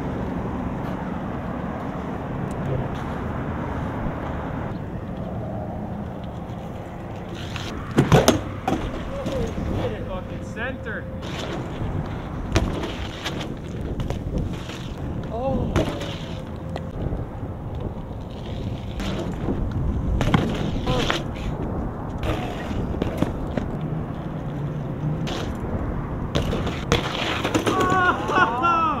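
BMX bike riding on asphalt and a concrete curb ledge: tyres rolling, with a sharp hard knock about eight seconds in and many smaller knocks and clicks of the bike's metal parts against the concrete later on. Near the end, the bike clatters onto the ground as the rider bails.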